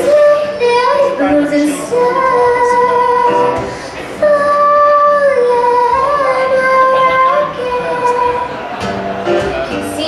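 A young woman singing solo in long held notes that slide between pitches, to her own acoustic guitar. The singing eases briefly about four seconds in, then comes back in full.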